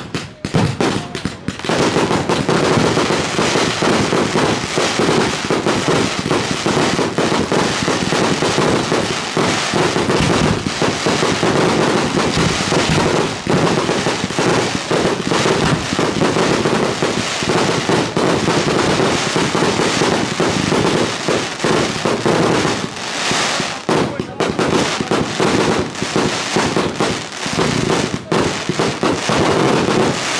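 Fireworks display going off in a dense, continuous barrage of shell bursts and crackle with hardly a break, loud throughout after a short lull about a second in.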